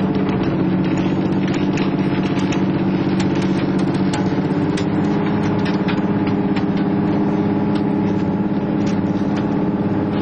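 A fishing trawler's engine and deck winch machinery running, a steady even hum with scattered sharp clicks and ticks over it.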